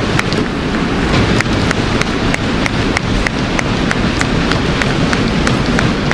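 Large audience applauding steadily after a speech ends, many hand claps blending into a dense, continuous clatter.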